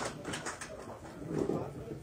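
Low, indistinct murmur of voices in a meeting room between speakers, with no clear words.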